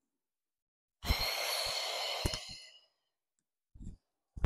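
A woman's forceful exhale through the mouth, about two seconds long and fading at the end, timed to the effort of a sit-up.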